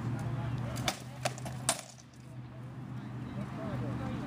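Three sharp knocks of rattan swords striking shields during armoured sparring, spaced about a third to half a second apart, the last the loudest.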